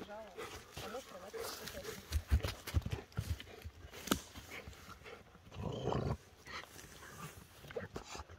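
A Rottweiler tugging and dragging a long dead branch through grass, with scattered sharp knocks and snaps of dry wood. A short wavering whine from the dog near the start.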